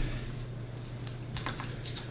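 A few light clicks of keys tapped on a laptop keyboard in the second half, over a steady low room hum.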